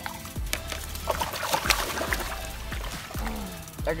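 Water splashing and sloshing as a redfish is released by hand at the side of a kayak and thrashes away, loudest about a second or two in, over background music.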